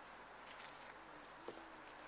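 Near silence: faint outdoor room tone with a single soft click about one and a half seconds in.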